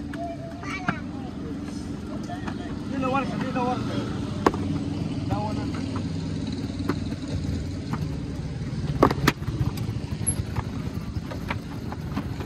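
Steady low drone of an engine running at idle, with snatches of voices and a few sharp knocks over it.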